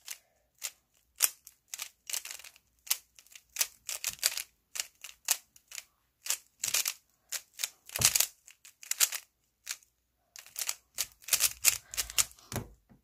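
Stickerless 3×3×3 speed cube being turned rapidly by hand during a timed solve: quick, irregular plastic clicks and clacks as the layers snap round, in runs of several turns with brief pauses.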